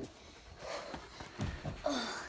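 A dog panting, with a few soft knocks about three-quarters of the way through and a short pitched sound near the end.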